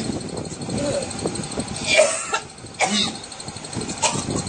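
A person coughing: two short coughs, one about two seconds in and another just under a second later.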